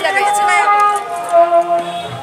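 Crowd of visitors' voices mixed with music, with several long held pitched notes.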